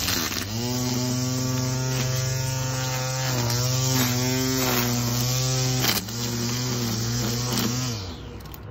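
Electric string trimmer motor running with a steady hum as the line cuts grass; it dips briefly about six seconds in, picks up again, and cuts off near the end.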